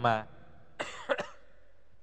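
A man coughs briefly into a handheld microphone about a second in, a short rough burst with a quick second catch.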